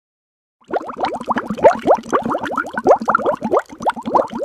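Bubbling sound effect: a rapid run of rising bloops and pops, several a second, starting a little under a second in after a brief silence.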